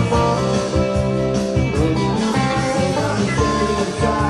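Live band music led by electric guitar, with notes held over a steady bass line.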